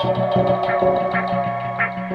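Ambient electronic music: held synthesizer tones over steady low bass notes, with a soft repeating pulse.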